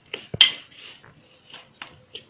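Hands kneading a stiff mixed-flour dough in a stainless-steel plate. The dough is pressed and turned against the metal with soft rubbing, broken by a few sharp metallic knocks against the plate, the loudest about half a second in.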